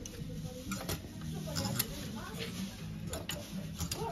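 Clothes hangers clicking against each other and along a shop rail as garments are pushed aside one by one: a few sharp clicks, some in quick pairs.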